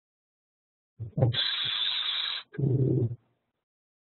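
A man's voice: a muttered "oops", then about a second of steady hiss that starts and stops abruptly, then a short hummed "mm".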